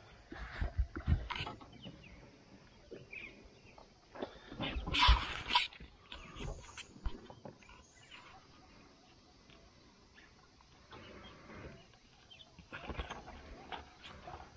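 Handling noises as a small bull shark is laid and held on a measuring mat on a carpeted boat deck: scattered knocks and bumps, with one louder noisy burst lasting about a second near the middle.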